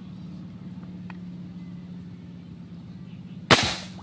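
A single sharp airgun shot fired at a fish in the water, about three and a half seconds in, over a steady low hum.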